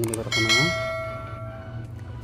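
A single bell-like chime rings out about half a second in and fades away over about a second and a half: the notification-bell sound effect of a YouTube subscribe-button animation.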